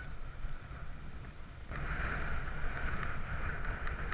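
Wind buffeting the microphone and tyre rumble from a mountain bike rolling along a lane, a steady higher hiss joining in a little under two seconds in.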